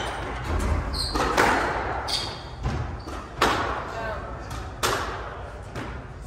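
Squash rally: the rubber ball struck hard by rackets and hitting the court walls, several sharp cracks about a second or so apart, echoing in the glass-walled court hall.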